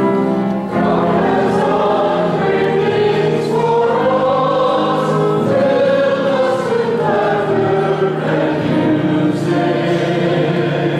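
Church choir singing a sacred song with instrumental accompaniment, a new phrase beginning about a second in.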